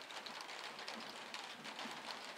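Light rain falling as a steady patter of drops.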